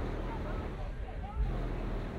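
Low engine rumble from a Chevrolet Camaro creeping slowly past, with people's voices talking over it.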